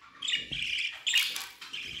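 Budgerigar chicks giving several short, harsh squawking calls while being handled in their nest bowl.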